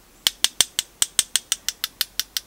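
A paintbrush rapped in quick, even taps against a second brush handle, about six light clicks a second, flicking watery white gouache off the bristles onto the paper as star splatters.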